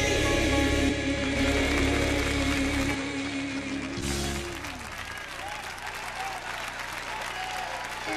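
Gospel choir holding a long sung note over low instrumental backing, which breaks off about four and a half seconds in. The congregation's clapping and applause then takes over.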